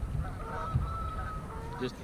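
Birds calling in repeated short, steady-pitched calls over a low rumble.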